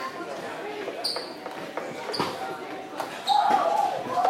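Indistinct voices echoing in a large hall, with three short high squeaks and a few light knocks. A louder voice comes in near the end.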